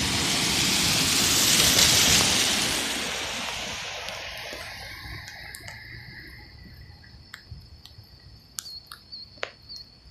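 Hi-rail truck running along the railroad track and moving away, its noise peaking about two seconds in and then fading steadily over the next several seconds. Near the end, scattered faint clicks and a faint high, steady chirping are left.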